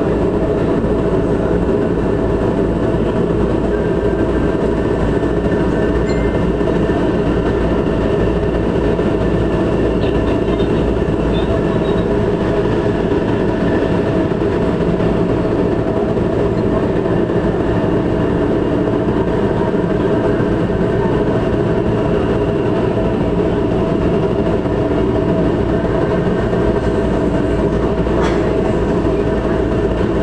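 A Metro Manila MRT Line 3 train heard from inside a moving passenger car: steady rolling and motor noise with a constant hum, unbroken throughout.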